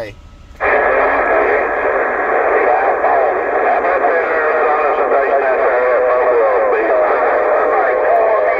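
Sideband CB radio receiving: several distant stations' voices come through its speaker at once, talking over one another with hiss, and start suddenly about half a second in.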